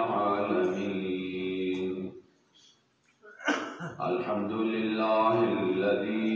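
A man's voice chanting in long, held, melodic notes, the sustained recitation of a cleric at a majlis. It breaks off for about a second near the middle, then a brief sharp sound comes before the chanting resumes.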